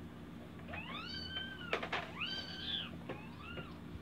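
A baby squealing: three high-pitched, drawn-out calls that rise and fall, with a couple of sharp plastic clacks from the walker's tray toys between the first and second.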